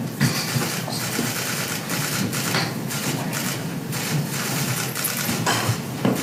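Steady hiss of room noise with several short, sharp clicks and rustles scattered through it, as people move about a courtroom.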